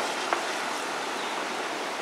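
Steady rush of flowing water, with one short click about a third of a second in.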